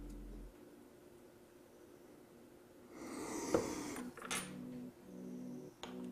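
Quiet watchmaker's bench: a soft rushing noise about three seconds in and two light clicks of small steel tools being set down on the bench.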